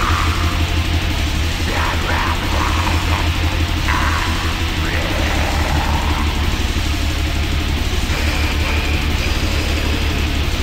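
Death metal: heavily distorted guitars over fast, dense drumming, loud and unbroken.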